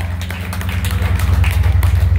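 Loud, steady low drone from the band's amplifiers as the music rings out, with scattered light taps and clicks over it.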